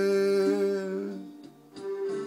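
A man singing, holding a long note at the end of a refrain line that fades out about a second and a half in; a new sung note begins near the end.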